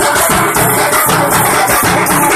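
Tappu melam music: an ensemble of thappu frame drums beating a loud, steady, fast rhythm with jingling high percussion.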